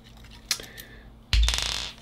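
A small click, then a sudden thump and a quick rattling metal clatter lasting about half a second, from small metal parts being handled while the gimbal's sled is taken apart.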